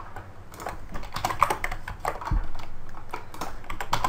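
Computer keyboard keystrokes: an irregular run of clicks as a line of code is pasted into place again and again.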